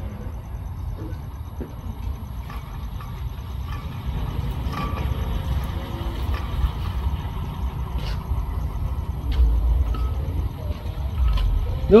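Low diesel rumble of a train approaching slowly along the track during shunting, growing gradually louder, with a few faint clicks.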